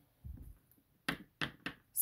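Leather handbag being handled and shifted on a wooden tabletop: a soft low thump, then four sharp knocks as it is moved.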